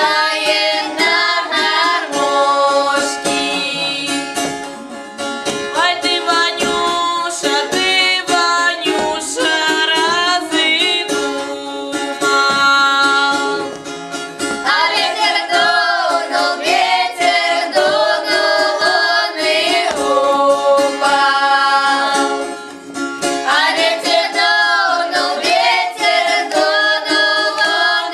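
A group of girls singing a Russian folk song together, in long phrases with short breaks between them, accompanied by a strummed balalaika.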